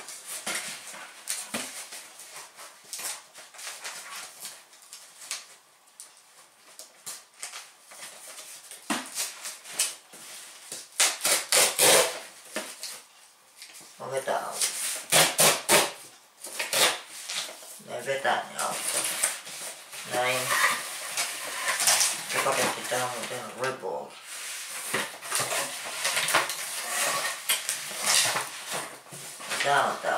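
A cardboard shipping box being opened by hand: irregular tearing, scraping and crackling of cardboard, tape and paper packaging in bursts, with a denser run of sharp rips partway through.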